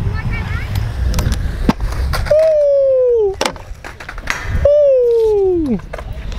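Stunt scooter wheels rolling on concrete with a few sharp knocks from the deck and wheels. Then come two long, loud, falling shouts of "ohhh" as the onlookers react to a trick.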